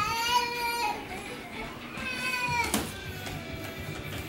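A baby's high-pitched squeals: two drawn-out calls, the second falling in pitch as it ends, over background music.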